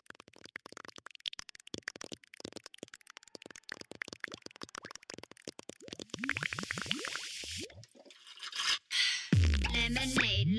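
Dance-medley track played over the stage sound system: a transition of rapid clicking sound effects, then a string of short rising pitch glides, before a heavy bass beat drops in about nine seconds in.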